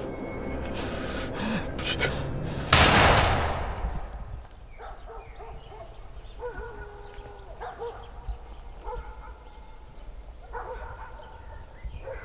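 A single pistol shot about three seconds in, loud and sudden, with a tail that dies away over about a second. It is followed by a few faint short calls.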